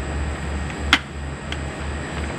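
A single sharp plastic click about a second in: the Watermelon Smash toy watermelon's shell snapping open along its seams as it is pressed down on a head. A steady low hum runs underneath.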